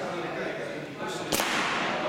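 A paintball marker fires a single shot at a target board: one sharp crack about a second and a half in.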